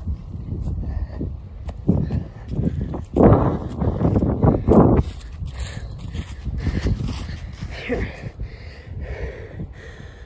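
Wind buffeting a phone's microphone in gusts, a low rumble that swells loudest from about three to five seconds in, with footsteps through grass and dry leaves.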